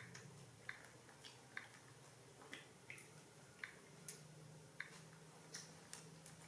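Faint, irregular wet smacks and clicks, a little under two a second, of young macaques chewing mango.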